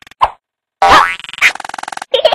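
Cartoon sound effects: a short plop, then after a brief gap a louder sound that slides in pitch, followed near the end by a buzzy pulsing tone.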